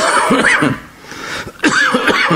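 A man's voice: two loud, wordless vocal outbursts about a second and a half apart, each rising and falling in pitch.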